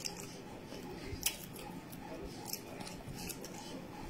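A person chewing a mouthful of pounded yam and soup, with short wet mouth clicks and smacks scattered through, the sharpest about a second in.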